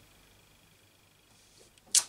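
Near-quiet while a clear acrylic stamp block is held pressed onto cardstock, then one short, sharp swish near the end as the block is lifted off the paper.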